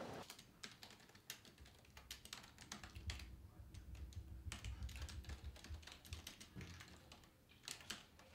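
Faint typing on a computer keyboard: irregular, quick key clicks, with a low rumble in the middle.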